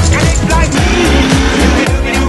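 Electro swing music with a steady bass beat and sliding pitched melody lines.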